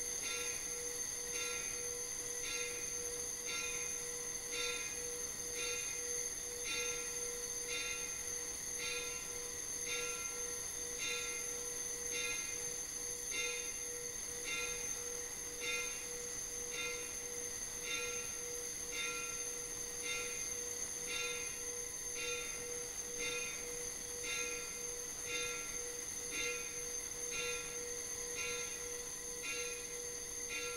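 Altar bells ringing in an even rhythm, about three rings every two seconds, over a steady high ringing tone. The ringing marks the blessing of the people with the Blessed Sacrament at Benediction.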